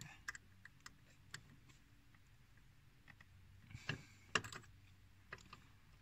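Sparse, faint clicks and small taps of hand tools working the small Allen screws of an aluminum hood release handle, a few isolated ones early and a small cluster about four seconds in.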